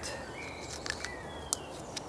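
Quiet outdoor ambience with faint high bird chirps, short thin calls with slight pitch glides. A few sharp light clicks come through, the clearest about one and a half seconds in.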